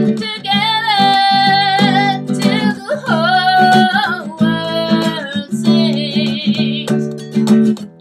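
Acoustic guitar strummed in steady chords while a woman sings long held notes over it.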